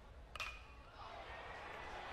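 A metal baseball bat hitting a pitch about a third of a second in: one sharp ping with a short ringing tail, the ball popped up high. Faint crowd noise rises afterwards.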